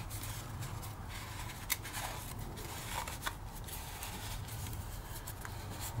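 Wire coil being worked onto a cardboard tube by hand: soft scraping with a few small sharp clicks of wire against cardboard, over a steady low hum.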